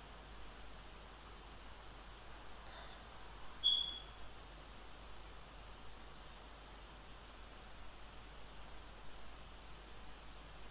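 Faint steady hiss of room tone, with one brief high-pitched chirp a little over a third of the way in.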